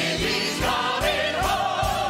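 A musical-theatre ensemble singing a show tune in chorus over instrumental accompaniment, ending on a long held note with vibrato.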